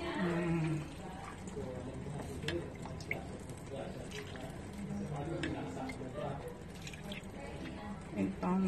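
Beef broth being ladled into a frying pan of stewing beef and vegetables: liquid pouring and dripping, with a few light knocks of the ladle against the pan.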